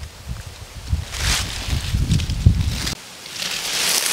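Wind buffeting the microphone in a low, uneven rumble, with gusts of rustling hiss. The rumble cuts off suddenly about three seconds in, leaving only a hissing rustle.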